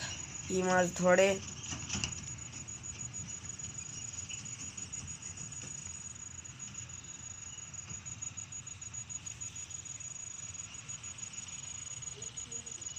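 Crickets chirring: a steady, high-pitched trill of rapid fine pulses.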